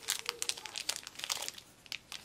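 Thin clear plastic sleeve crinkling and crackling in quick runs as a fountain pen is slid out of it.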